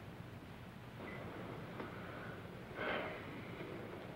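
Faint hiss and low hum of an old film soundtrack, with a short breathy exhale a little before the end.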